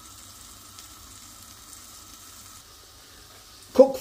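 Chicken pieces sizzling and steaming in a little water in a covered frying pan, a steady faint sizzle.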